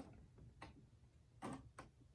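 Near silence with a few faint, short clicks at a computerized sewing machine as pinned fabric is settled under the presser foot and the foot is lowered; the clearest click comes about one and a half seconds in.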